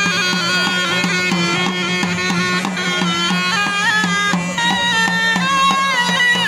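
Snake charmer's been (pungi), a gourd-bellied reed pipe, playing a winding, ornamented melody over its own unbroken drone.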